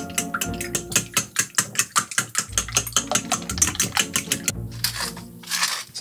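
Background music under a fast, even clicking of about seven strokes a second: a fork beating raw eggs in a bowl for an omelette.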